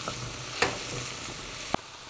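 Sliced courgettes and mushrooms sizzling in a hot steel pot as they are stirred with a wooden spoon, with two short knocks of the spoon against the pot, one about halfway through and one near the end.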